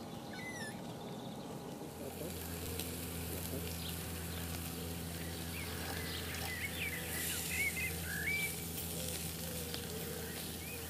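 Small birds chirping, a few calls just after the start and a livelier run of short twittering notes in the second half, over a steady outdoor hiss. A low steady hum comes in about two seconds in.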